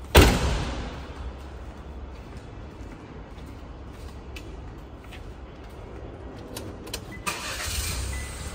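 A car's rear liftgate slammed shut: one loud bang with a short ring-out, followed by a steady low hum. Near the end, the car's engine starts.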